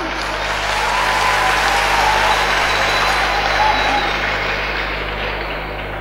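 A crowd applauding. The applause swells over the first couple of seconds, then fades off toward the end.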